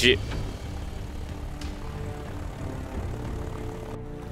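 Steady low drone of a propeller aircraft's engines, a sound effect, under soft background music.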